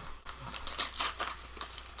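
Wax-paper wrapper of a 1986 Donruss baseball card pack crinkling as it is opened and the cards are handled, in irregular small crackles.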